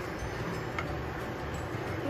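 Plastic slotted spoon stirring sauce in a skillet on the stove, with a faint click a little under a second in, over a steady low hiss and hum.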